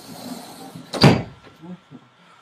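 A door bangs shut with a single heavy thud about a second in, preceded by a brief rustle.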